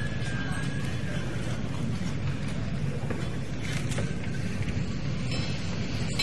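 Steady low rumble of a large hall with a seated audience murmuring, with a few faint knocks.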